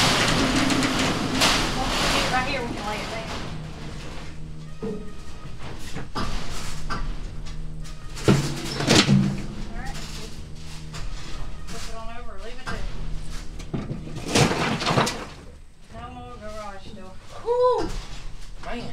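A large metal trailer door panel scraping and clattering across a metal trailer floor as it is manhandled out, loudest in the first two seconds, with sharp knocks a little after eight seconds and again near fifteen seconds. Short bits of voice come near the end.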